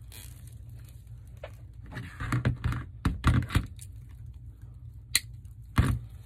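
Plastic deco mesh crinkling and rustling in loud bursts as hands work a zip tie through it on a wire wreath frame. A sharp click comes about five seconds in and a knock just before the end.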